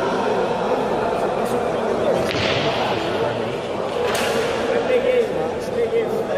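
Sharp clicks of sinuca balls being struck on the table, the two clearest about two and four seconds in, over a steady murmur of voices in the hall.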